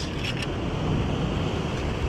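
Steady wind noise on the microphone over the wash of ocean surf, with a few faint clicks near the start.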